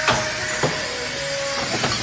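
Automatic rigid box bottom folding machine running: a steady mechanical hum broken by sharp clacks from its pneumatic folding mechanism, three in the space of two seconds.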